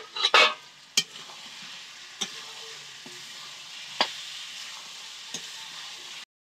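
Potatoes frying in a metal karahi, a steady sizzle, as a spatula stirs them and clicks sharply against the pan about four times. A louder burst of stirring comes in the first half second.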